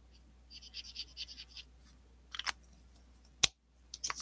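Marker nib scratching on paper in a quick run of short colouring strokes, then a click, and a sharp louder click near the end.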